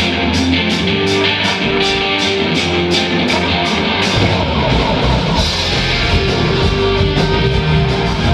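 Live rock band playing: electric guitars, bass guitar and drum kit. Sharp drum hits come about three a second through the first half, and the band grows fuller and heavier in the low end from about halfway.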